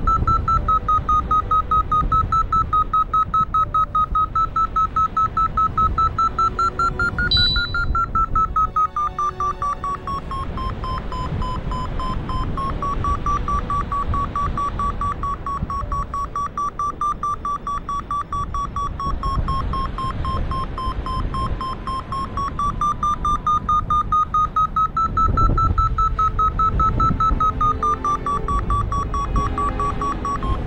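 Paraglider variometer beeping in quick repeated pulses, with pitch that drifts with the climb rate: lower in the middle, higher again near the end. The pulsed climb tone signals the glider climbing in lift. Wind rumbles on the microphone underneath.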